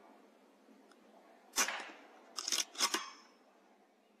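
A single shot from a Weihrauch HW100 .22 PCP air rifle, a sharp crack about a second and a half in, followed about a second later by two quick mechanical clacks as the side-lever is worked to load the next pellet.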